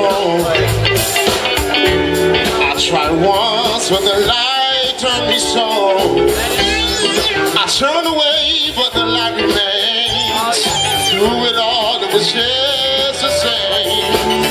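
A live band playing a song: sung vocals over electric guitar, keyboards and drums.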